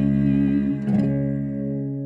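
Acoustic guitar and cello ringing out the song's final chord. A low sustained note drops out under a second in, a soft last guitar strum comes about a second in, and the chord then slowly fades.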